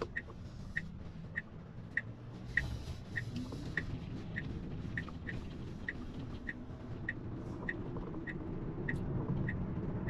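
Car turn-signal indicator ticking steadily, about one and a half ticks a second, over low road and tyre rumble inside a Tesla's cabin as the car gathers speed.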